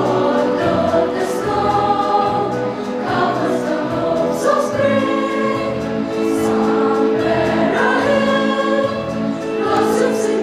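Children's school choir singing, with long held notes that shift in pitch every second or two.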